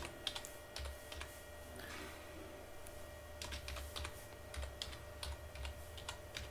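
Typing on a computer keyboard: scattered, irregular keystrokes, over a faint steady electrical hum.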